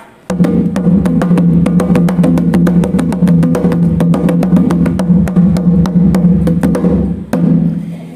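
Conga drum played with bare hands: a fast, even run of hand strokes, several a second, over the drum's low ringing tone. It starts just after the beginning and stops about a second before the end.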